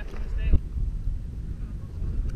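Low rumble of wind buffeting a body-worn camera's microphone, with a brief distant voice about half a second in.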